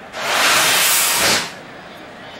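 A single hissing whoosh, about a second and a half long, that starts sharply and fades out: a TV broadcast transition sound effect marking the wipe from a replay back to live pictures.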